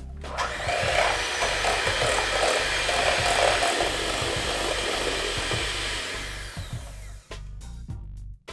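Electric hand mixer running, its beaters whipping egg whites in a stainless steel bowl toward soft peaks. It starts just after the beginning and fades out near the end.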